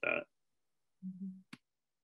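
A brief low hum of a human voice, like a closed-mouth "mm", about a second in, followed at once by a single sharp click.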